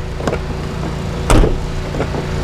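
Freightliner Cascadia truck cab door being opened by its handle: a light latch click, then a louder clunk a little over a second in as the door releases. A steady low rumble runs underneath.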